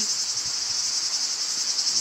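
A steady, high-pitched chorus of insects shrilling without a break, with a fast, fine pulsing texture.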